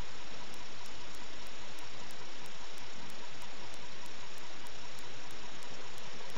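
Steady, even hiss of recording noise, with no distinct sounds standing out.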